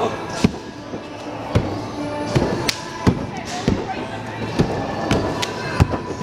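A person landing a flip on a sprung gym floor with a sharp slap about half a second in, followed by scattered sharp slaps and thuds of feet and bodies on the floor, over background music.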